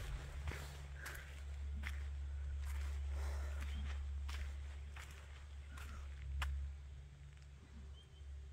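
Footsteps walking at an even pace on a dry dirt bush track strewn with leaf litter, roughly a step every three-quarters of a second, over a steady low rumble.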